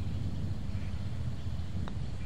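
A steady low rumble, with a single light tap of a putter striking a golf ball near the end.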